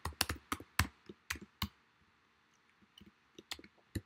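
Typing on a computer keyboard: a quick run of about eight keystrokes in the first second and a half, then a few more scattered keystrokes in the last second.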